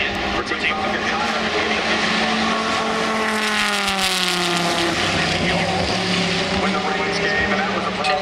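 SRT Viper race car's V10 engine running on track, its note falling in pitch about three to five seconds in, then holding steady.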